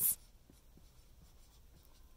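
Chisel-tip dry-erase marker writing a word on a whiteboard: faint scratching strokes of the felt tip across the board.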